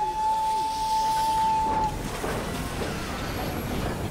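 Steam locomotive whistle blowing one steady note for about two seconds, then the hiss of escaping steam over a low rumble from the engine.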